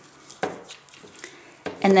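Light handling taps and clicks of a metal table fork and ribbon on cardstock. The sharpest tap comes about half a second in, followed by a few fainter clicks.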